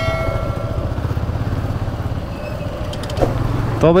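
Yamaha motorcycle engine running steadily at low speed, with road and wind noise. A held horn-like tone fades out within the first second.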